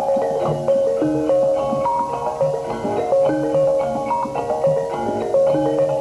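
Javanese gamelan playing jaran kepang accompaniment: bonang kettle gongs struck in a quick, repeating run of bright ringing notes over deeper notes below.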